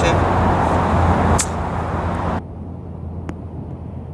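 A golf iron chipping a ball off grass: one sharp click of the clubface striking the ball about a second and a half in, over a steady low rumble. About a second later the sound drops much quieter, with one faint tick.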